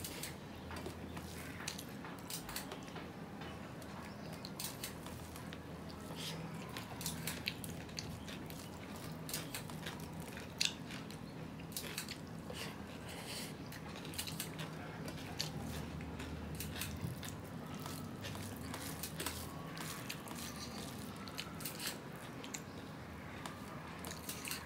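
Close-up eating sounds: a man chewing mouthfuls of rice with mashed potato and flat-bean bhorta eaten by hand, with many short wet mouth clicks and smacks throughout.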